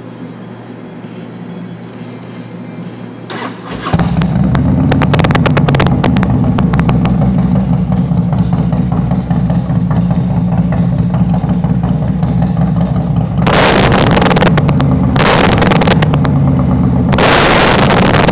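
Harley-Davidson Street Glide's V-twin starting about four seconds in and running loud through Screaming Eagle mufflers with their baffles removed. It is revved twice in the last five seconds.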